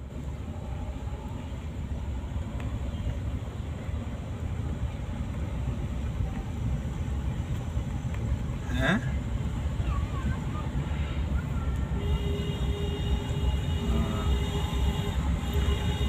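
Road and engine rumble of a car driving down a hill road, heard from inside the cabin, steady and slowly growing louder. A falling pitched tone sounds about nine seconds in, and a steady held tone with overtones joins from about twelve seconds in and lasts until near the end.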